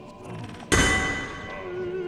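Experimental chamber music: a single loud metallic strike about two-thirds of a second in, its bright ringing tones fading over the next second, over quieter held instrumental tones.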